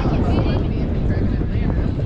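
Wind buffeting an outdoor microphone with a heavy, uneven rumble, and faint voices of players and spectators behind it.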